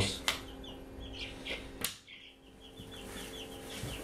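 Two sharp clicks, one just after the start and a louder one a little before the middle, over a steady low electrical hum. A run of faint, quick, high chirps from a bird goes on through most of the rest.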